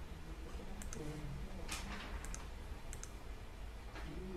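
A few faint, sharp clicks, mostly in close pairs, over a low steady hum, with a short soft rush of noise a little before the middle.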